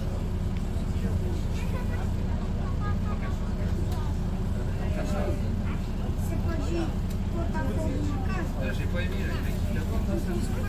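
City bus running, a steady low rumble of engine and road heard from inside the passenger cabin, with faint voices in the background.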